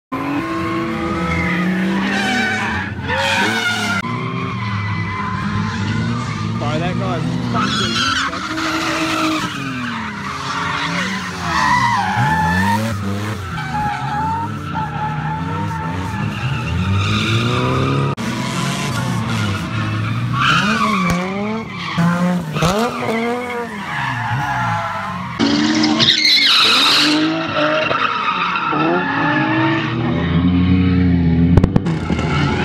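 Drift cars' engines revving up and down repeatedly as they slide through the corners, with tyres squealing and skidding on the tarmac.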